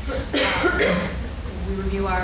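A person coughing: a short, sharp cough about a third of a second in, the loudest sound here, with speech resuming near the end.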